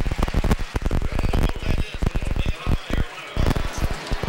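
Television broadcast audio breaking up in rapid, irregular crackles and pops over the stadium sound. This is a transmission fault: the 'audio hits' that the broadcast later apologises for.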